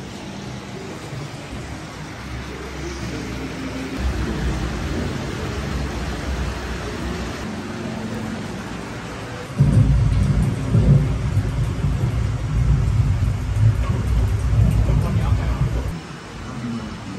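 A deep, thunder-like rumble. It gets louder about four seconds in and louder again, suddenly, near ten seconds in.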